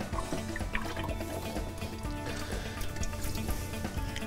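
Automatic transmission fluid pouring out of the open Allison 1000 valve body in a stream, the residual fluid left after the pan and internal filter come off, over background music.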